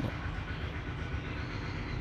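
Steady low background rumble with a faint hum under it and no distinct event.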